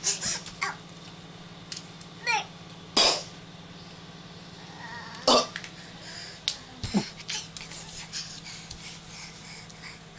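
A toddler making short, scattered vocal noises, coughs and grunt-like sounds a couple of seconds apart, with the loudest about three seconds in. Small clicks come from handling a plastic toy pistol, over a steady low hum.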